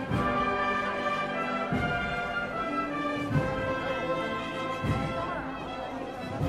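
Processional brass band playing a slow march in sustained chords, with a low drum beat about every second and a half.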